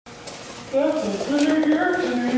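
A voice says "That's a biiiiig air tank", drawing out the word "big" in long held notes starting about two-thirds of a second in. Faint rustling of a cardboard box being handled runs under it.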